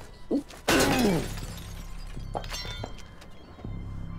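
A car's side window smashed in, a sudden loud crash of breaking glass about a second in, followed by a few lighter clicks.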